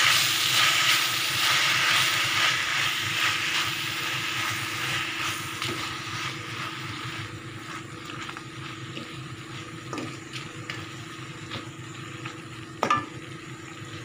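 Fresh mint leaves sizzling in oil in a metal kadai as they are stirred with a wooden spatula. The sizzle is loudest at first and fades steadily as the leaves wilt, with one sharp knock near the end.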